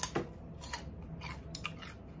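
A person biting into food and chewing close to the microphone: a sharp bite at the start, then a few short, crisp chewing sounds.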